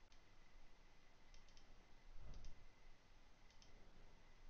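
Near silence with a few faint computer mouse clicks, coming in quick pairs about once a second.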